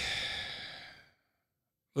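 A man's drawn-out "uh" trailing off into an exhaled sigh that fades away about a second in, followed by a moment of silence.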